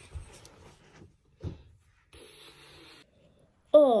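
Faint handling and rustling noises as toys are moved on a carpeted floor, with a soft thump about a second and a half in and a short hiss after it. A woman's voice starts near the end.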